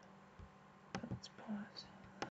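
A few faint clicks and soft handling noises over a steady low hum.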